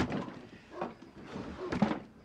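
A few knocks and thumps, about three in two seconds, with short breathy vocal sounds among them.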